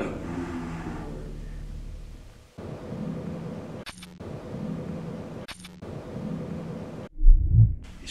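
Two short, sharp clicks about a second and a half apart over a low steady hum, then a loud deep thud near the end.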